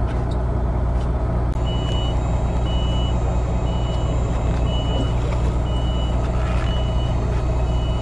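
Boat engine running with a steady low hum. From about two seconds in, a short high electronic beep repeats about once a second.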